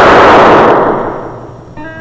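A semi-automatic pistol shot on an old film soundtrack. Its blast and echo are loud at first, then fade away over about a second and a half.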